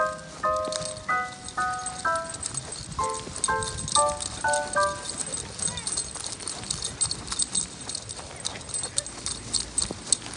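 A short tune of bright pitched notes, a few a second, that ends about halfway through, over a steady run of quick, light metallic jingling and clicking from two miniature dachshunds' harness and leash hardware as the dogs move about on their leads.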